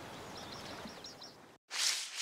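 Faint outdoor ambience with small bird chirps. The sound drops out suddenly about one and a half seconds in, and a short airy whoosh begins near the end.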